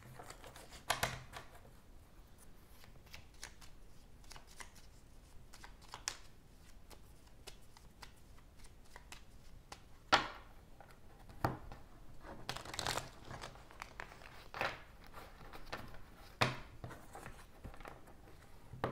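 Tarot deck being shuffled by hand: irregular short flicks and rustles of the cards, with the sharpest snap about ten seconds in.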